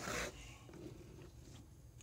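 Faint handling noise of a laptop's plastic case being turned over and pressed along its edges, with a few soft small ticks and otherwise quiet.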